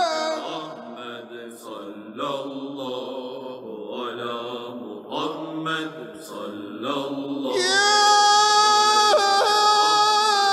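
Devotional vocal chanting of salawat, sung in short wavering phrases, then a long held note from about seven and a half seconds in.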